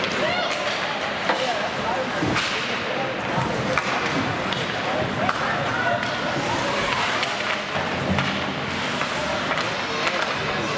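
Ice hockey game in play: several sharp knocks of sticks and puck scattered through a steady rink noise, with indistinct shouting voices.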